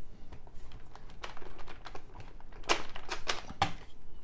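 Irregular light clicks and knocks of a plastic-rimmed RC monster-truck wheel being pulled off its hex hub, with a few sharper clacks in the second half.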